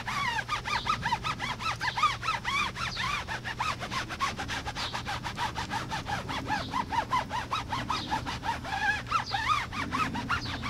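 Foam applicator pad rubbing tire shine into a tire's rubber sidewall in quick back-and-forth strokes, squeaking several times a second.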